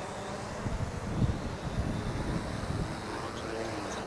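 Cuta-Copter Trident T5K fishing drone's rotors whirring as it descends and touches down on a landing pad, with low gusty rumbles on the microphone; the whir drops away right at the end as the motors stop.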